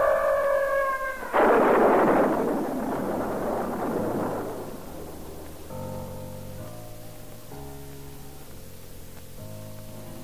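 Voices laughing briefly, then a sudden clap of thunder about a second and a half in that rumbles away over about three seconds. Quiet music with held chords follows.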